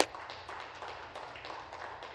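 Light applause from members in a large legislative chamber, many scattered claps dying down.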